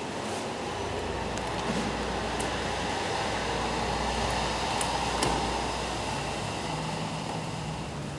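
Otis Series 5 scenic elevator car travelling down, with a steady low hum and rushing noise of the ride. The hum comes in about a second in and fades near the end as the car slows.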